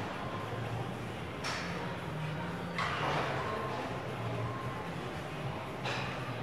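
Gym background in a large hall: a steady low hum with faint music, broken by three sudden short noisy sounds, about a second and a half in, about three seconds in, and near the end, the middle one the loudest.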